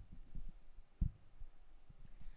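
A pause in speech holding a faint low rumble with a few soft low thuds, the clearest one about a second in.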